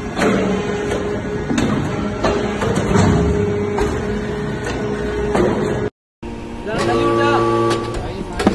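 TCM hydraulic metal-chip briquetting press running: a steady hum from its hydraulic unit with repeated knocks and clanks. About six seconds in, the sound cuts out briefly, then the press's hum resumes.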